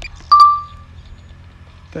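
A single short, bright ding about a third of a second in: a sharp click that rings on as one clear tone and fades within about half a second.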